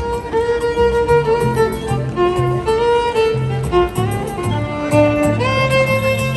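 Street busker playing a melody on the violin, held notes changing every half second or so, over an accompaniment with a steady low bass line.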